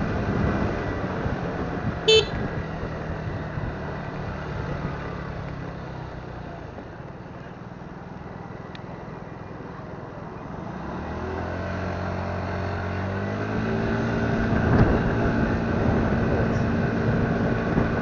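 Motor scooter engine easing off and dropping to a quiet idle for a few seconds, then speeding up again as the scooter pulls away, in street traffic. A short high beep sounds about two seconds in.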